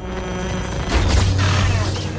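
Sci-fi film sound effect of a hand heating to a red glow: a buzzing hum, with a low rumble that swells about a second in.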